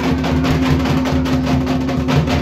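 Large rope-tensioned barrel drum (dhol) beaten with a stick in a fast, even rhythm of strokes, over a steady held low tone.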